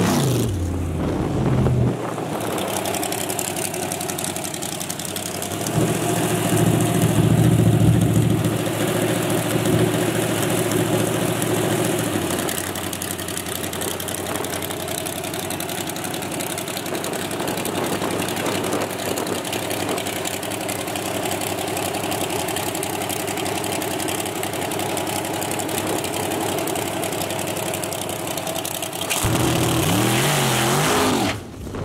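Naturally aspirated drag-race Ford pickup engine idling, with a louder stretch of several seconds about a quarter of the way in, then a steady idle, rising again about a second before the end.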